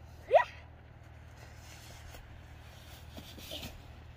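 A child's short, rising vocal cry, like a gasp, about half a second in, followed by a faint rustle of snow as he slides down the pile.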